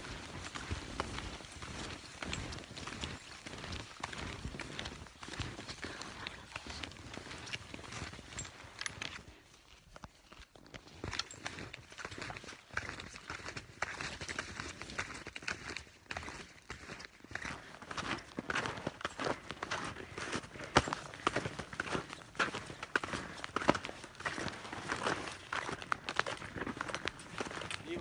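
Footsteps in snow, a steady run of short crunches from people walking on a snow-covered trail, with a brief quieter pause about ten seconds in.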